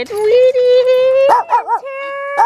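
A dog whining in one long, steady, high note, broken about two-thirds of the way in by three quick yips, then whining again.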